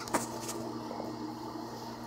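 Steady electrical hum with a fan's whir from a portable induction cooktop driving a 1500-watt fan heater through a pancake coil, with a few light clicks near the start.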